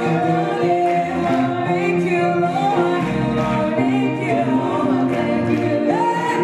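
Gospel choir singing in harmony, several voices holding and changing chords over low bass notes.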